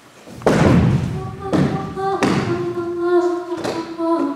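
Four loud, heavy thuds at uneven intervals, the first the loudest, each ringing on briefly, over a group of voices humming held notes.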